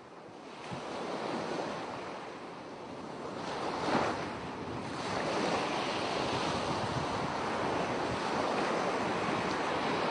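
Steady rushing noise of water, like surf washing, building over the first second with a brief louder surge about four seconds in.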